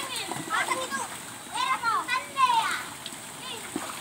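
Children's high-pitched voices calling out in short bursts, over water splashing as they wade about in a shallow stream.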